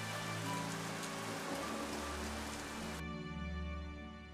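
Steady rain falling, with soft background music of held notes underneath. The rain cuts off suddenly about three seconds in, leaving only the music.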